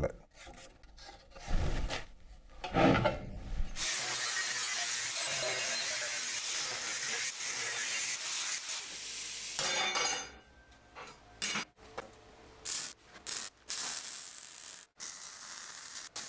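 An angle grinder cutting sheet steel, a steady grinding noise for about six seconds after a few handling knocks, cutting a hole in the front of a steel rocket stove. It stops, and is followed by a string of short bursts as the steel channel is welded on.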